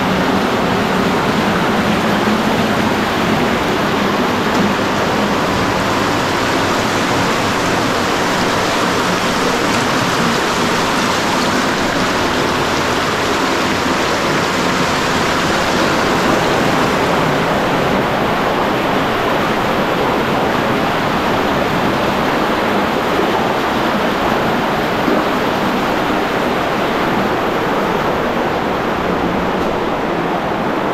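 Underground cave river rushing and cascading over rocks, a loud steady wash of water noise; the higher hiss eases a little past the middle.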